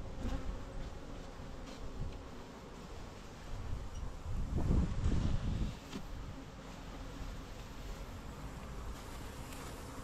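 Honeybees from a swarm buzzing close by, steady throughout. About halfway through there is a louder stretch of rustling and knocking as the garden chair is handled.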